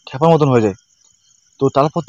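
Crickets trilling steadily as a continuous high-pitched band under a man's speech, with a short pause in the talk near the middle.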